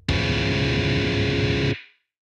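Rock song ending on a distorted electric guitar chord, struck once and held for about a second and a half, then cut off.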